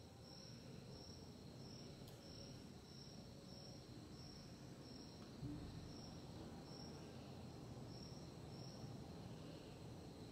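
Near silence: quiet room tone with a faint, high-pitched chirp repeating about twice a second, and one soft thump about five and a half seconds in.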